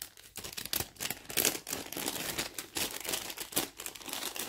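Clear plastic bag crinkling and rustling in irregular crackles and clicks as it is handled and a wax-print fabric bracelet is slipped into it.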